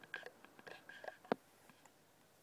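Faint rustling and handling noises from fingers on a piece of fabric held close to the microphone, with one sharp tap just past a second in.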